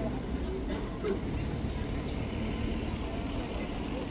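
City street ambience: a steady low rumble of traffic with faint scattered voices.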